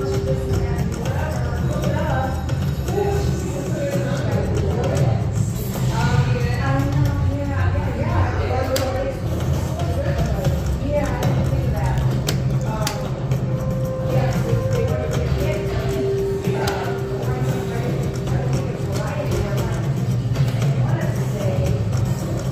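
Wolf Run Eclipse slot machine playing its electronic reel-spin music and tones through about five spins, with background voices and a steady low hum.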